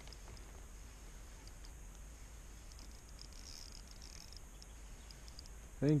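Faint open-air ambience on calm water: a low rumble with a few soft, high ticks scattered through it, then a man's voice starts right at the end.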